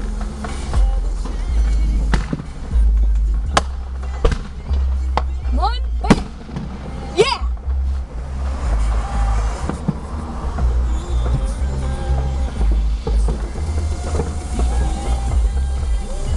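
Fireworks going off: scattered sharp bangs and pops, with two rising whistles about five to seven seconds in, each ending in a bang. A steady low rumble runs underneath.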